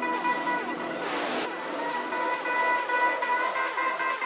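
Psychedelic trance music with the bass and kick drum dropped out: steady held synth tones over many short falling synth glides, with two swooshing noise sweeps in the first second and a half.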